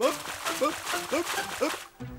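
A cartoon character's voice making about six short rising-and-falling comic yelps, roughly three a second, over a hiss of splashing water.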